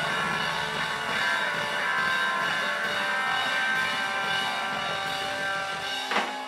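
Live band on stage with electric guitar, banjo, upright bass and drums, playing a loud passage of held, ringing notes.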